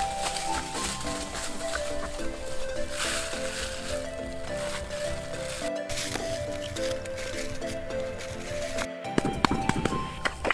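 Background music, a melody of held notes, with a few sharp clicks near the end.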